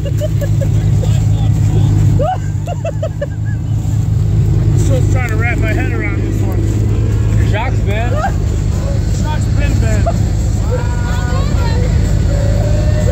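Off-road truck's engine running steadily at idle, a constant low hum, while the truck sits stuck against a tree.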